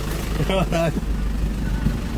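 Tractor engine running steadily, heard from inside the cab, with a short stretch of a man's voice about half a second in.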